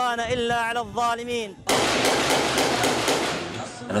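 A man's voice declaiming in long, drawn-out phrases, then a sudden burst of rapid automatic gunfire from about halfway in, lasting about two seconds and cut off abruptly.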